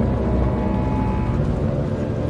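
A steady low rumble with several held tones above it, a dark drone with no sudden events.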